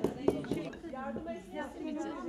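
Wooden pestle pounding black cabbage leaves in a ceramic mortar, sharp knocks about four a second that stop about half a second in, under women's voices talking.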